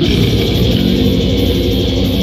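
Live band playing loud with electric guitar and bass guitar, a dense wall of sound that runs without a break.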